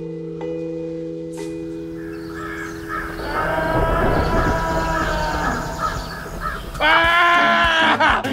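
Crows cawing repeatedly, with the loudest caws near the end, following a few seconds of sustained musical notes that die away.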